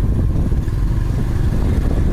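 Motorbike riding along a street: a loud, steady low rumble of the engine and wind on the microphone.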